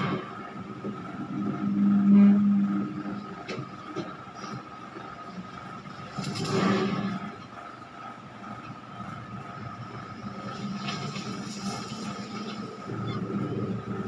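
A television speaker playing a horror film's soundtrack, picked up in the room: a low drone, loudest about two seconds in, with two swells of noise, one at the start and one about six and a half seconds in, over a faint steady high tone.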